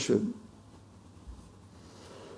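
A man's spoken word ending, then a pause of faint room hiss with one soft low bump about a second in.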